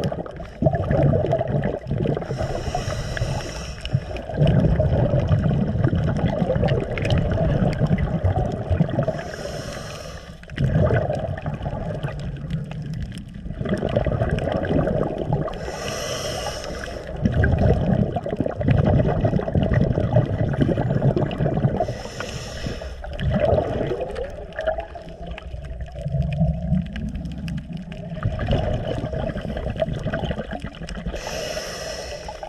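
Scuba diver breathing through a regulator underwater: a short hiss on each inhale, four times, about every six to seven seconds, with the low bubbling of exhaled air between them.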